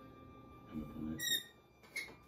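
Lever of an antique magic lantern effect slide being worked by hand: a low rub, then a short high squeak a little over a second in. A faint steady hum runs underneath.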